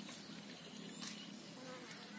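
Faint, steady buzzing of a flying insect.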